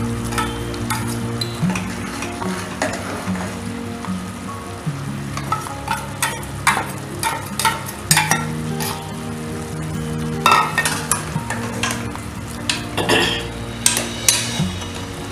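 A metal ladle stirring a thick vegetable curry in a metal pressure-cooker pot, with irregular clinks and scrapes against the pot, the loudest about ten and thirteen seconds in. Background music with slow, stepping low notes plays throughout.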